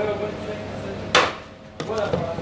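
A metal serving spoon knocks against a large metal pot of rice while pulao is scooped out. There is a sharp knock about a second in and a lighter one near the end, over a low steady hum and faint voices.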